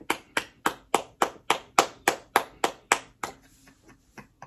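One person clapping their hands in a steady rhythm, about three to four claps a second. The claps stop about three seconds in, followed by a few soft ones.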